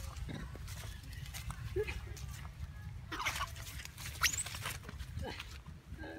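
Baby long-tailed macaque squealing in a few short, high squeaks. The sharpest is a quick rising squeal about four seconds in.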